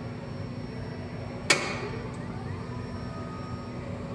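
A single sharp knock about a second and a half in, ringing briefly, over a steady low hum.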